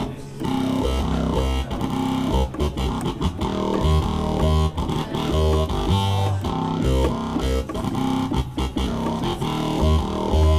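Yamaha Montage synthesizer played live on a dub rock bass patch: a powerful, low bass line of short notes that change pitch rhythmically. The patch has a vowel effect assigned to the mod wheel.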